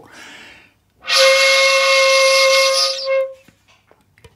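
Bamboo shakuhachi sounding one steady, breathy held note, ko, played at the same pitch as ri. It comes in about a second in after a faint breath and lasts a little over two seconds.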